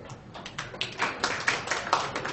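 Scattered hand-clapping from a small group of spectators around a snooker table, irregular claps starting about half a second in and growing denser, in appreciation of a potted ball.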